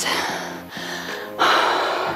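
A woman breathing hard from exertion: a breath out at the start, then a louder, rushing exhale about one and a half seconds in, over background music with steady held notes.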